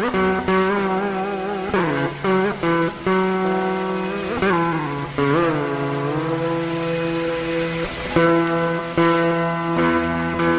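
Carnatic instrumental music led by a plucked veena, its notes bending and sliding between pitches in ornamented glides, with some notes held steady.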